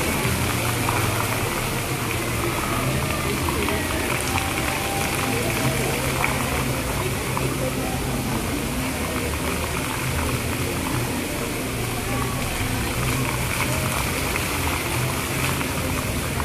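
A choreographed lit water fountain's jets splashing steadily, under music with held bass notes that change every second or two. Voices are mixed in throughout.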